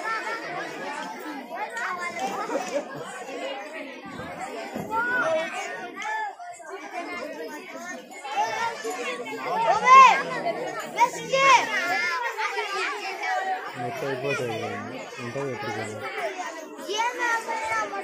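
Many children chattering and calling out over one another in an audience, with a few louder high-pitched shouts about two-thirds of the way through.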